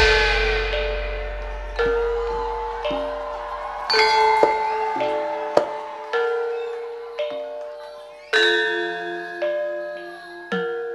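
Gamelan ensemble playing slow, sparse single notes on bronze metallophones, each struck note ringing and fading, about one a second. A deep low note from the start dies away over the first few seconds.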